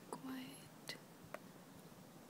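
A brief, quiet human voice, like a whisper or murmur, in the first half-second, followed by two faint clicks.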